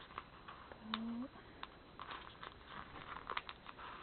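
Fingernails picking and scratching at a sheet of clear planner stickers: a string of faint small clicks and scrapes as a clear month sticker that won't lift is worked free from its backing. A short hummed 'mm' comes about a second in.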